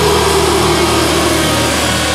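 Heavy metal music: a sustained distorted tone sliding slowly down in pitch over a steady low drone.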